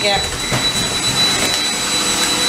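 Robot vacuum running on a hardwood floor: a steady whirring hum with a constant high-pitched whine.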